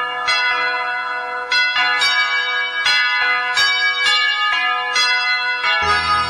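Bells ringing: about eight strikes at uneven spacing, each left ringing with many overtones. A low sustained keyboard chord comes in just before the end.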